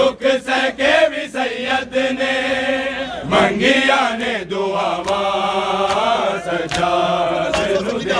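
Male voices chanting a Punjabi noha (Shia lament) together in a loud chorus, with sharp rhythmic strikes of matam, hands beating on bare chests, about three a second in the first two seconds and more scattered after that.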